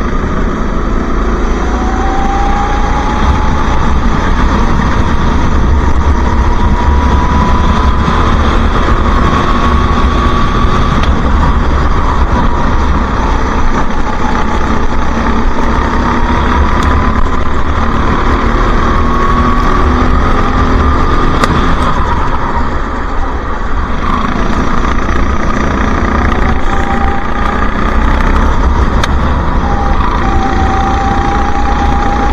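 Go-kart engine heard from onboard the kart, its pitch climbing along the straights and dropping back into the corners several times, over a steady low rumble.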